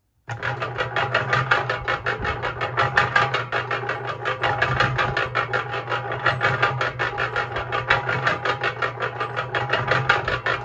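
Yardmax YM0046 1.6 cu ft electric concrete mixer switching on about a third of a second in and running empty. A steady motor hum sits under a fast, even clatter from the drive gear riding in the holes around the drum.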